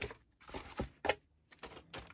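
Plastic model-kit sprues and a paper instruction sheet being handled and pressed down into a cardboard box tray: a string of short, light plastic clicks and paper rustles.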